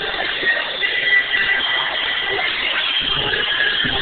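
Steady roller-rink din: a dense wash of noise with faint wavering high tones running through it.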